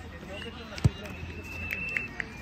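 A football bouncing once on artificial turf: a single sharp thud a little under a second in.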